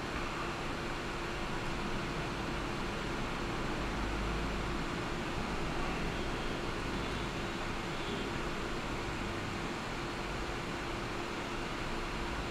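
Steady room noise: an even hiss with a faint constant hum and no distinct events.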